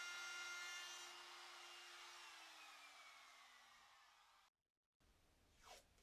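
Compact trim router running, faint and steady, then winding down with a falling pitch from about two seconds in as the sound fades out. A brief dead dropout follows near the end.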